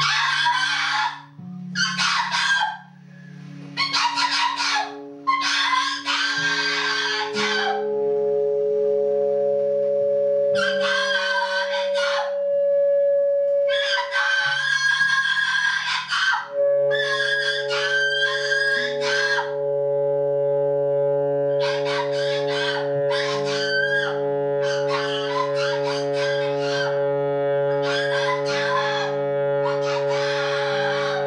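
Free-improvised noise music: a voice screaming in repeated shrill shrieks, each lasting from under a second to a couple of seconds with short gaps, over steady held drones from saxophone and electric guitar.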